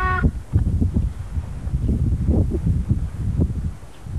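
Low, irregular rumbling and buffeting noise on a home camcorder's built-in microphone, of the kind caused by wind or by handling the camera.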